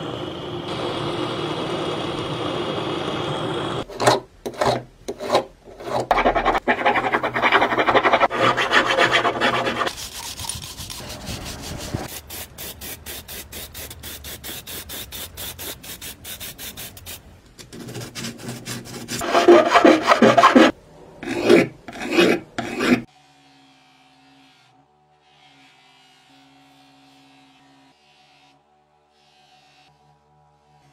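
A run of hand metal-finishing sounds. It opens with a steady hiss, then irregular rubbing and scraping strokes, then a fast, even run of short strokes, then more rubbing. For the last several seconds there is only a faint steady hum.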